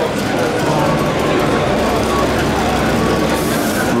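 Din of a crowded trade-show hall, many voices at once, with gas flame effects firing overhead: a low rumble for a couple of seconds and a brief hiss near the end.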